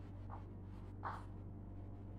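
Chalk writing a word on a chalkboard: a few faint, short scratching strokes.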